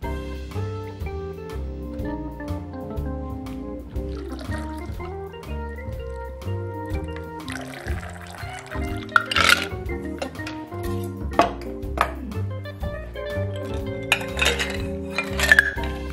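Background music with a steady bass line throughout. About halfway through, a stirred cocktail is poured from a metal mixing tin through a strainer into a rocks glass, and a few sharp clinks follow near the end.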